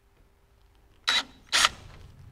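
Cordless drill driving a twist bit into the head of a solid aluminium rivet in two short bursts about half a second apart, drilling the rivet out of an aircraft's aluminium channel.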